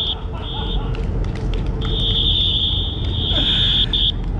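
A shrill, steady end-of-game signal sounding in blasts: a short one near the start, then one long blast of about two seconds in the second half, marking full time of a futsal match.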